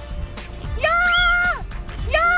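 Background music with a comic editing sound effect laid over it: a held, cat-like call that rises at the start, stays on one pitch for about two-thirds of a second, then drops. It sounds once about a second in and starts again at the very end.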